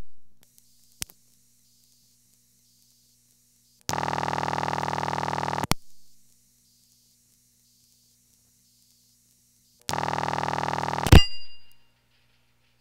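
No. 1 Crossbar incoming trunk relays clicking as ringing is cut through to the line. A steady hiss from the noisy ringing tone plant follows, then two rough bursts of audible ringing tone about six seconds apart. The second burst is cut short by a loud relay click when the call is answered and ringing trips; the hiss stops with it.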